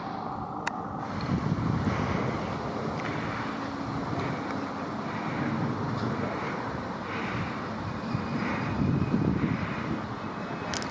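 Steady outdoor background noise with wind buffeting the microphone.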